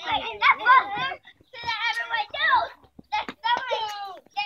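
Young children's high voices shouting and chattering in several short bursts with brief pauses.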